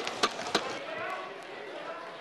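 Members thumping their desks in applause: a few scattered knocks that die away within about the first second, with voices in the chamber.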